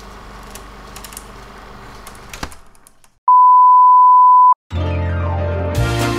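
A single loud, steady electronic beep tone lasting just over a second, after faint hum and a brief silence. Music then starts with a low bass note and a sliding sweep, filling out into a full tune near the end.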